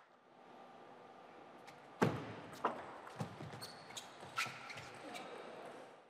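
Table tennis rally: the plastic ball clicks sharply off the rackets and table, a run of about six hits half a second to a second apart, starting about two seconds in. The hits echo in a large, nearly empty hall.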